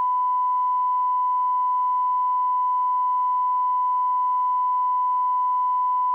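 Steady 1 kHz broadcast line-up tone: one pure, unwavering beep held at constant level.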